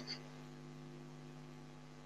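Faint, steady electrical hum: a few steady low tones under a light hiss.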